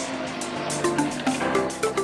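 Electronic background music with a steady beat and short repeating synth notes.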